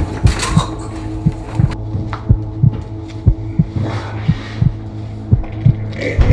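Suspense sound design in a film soundtrack: low heartbeat-like thumps, two to three a second, over a steady low drone. A brief hissing rush comes about two-thirds of the way through.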